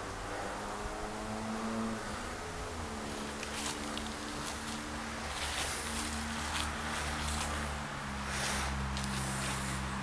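A steady engine hum, its pitch sinking a little in the first few seconds, with scattered rustling of footsteps on dry leaves.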